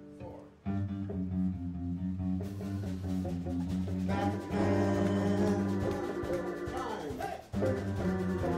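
Live country band starting a song in G on pedal steel guitar, electric guitars and electric bass, coming in about a second in. The playing breaks off briefly near the end, then goes on.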